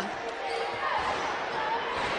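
A basketball being dribbled on a hardwood court, over the steady murmur of an arena crowd.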